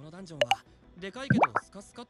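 Water drops plopping in a cave, each a quick rising plip, twice, with faint dialogue and background music underneath.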